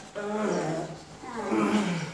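A man's voice making two drawn-out strained groans, each falling in pitch. They are the sound of effort while caught in a grappling hold.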